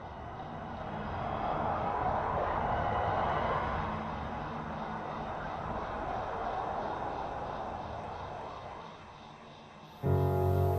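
Rushing wind noise that swells over the first few seconds and then slowly fades away near the end.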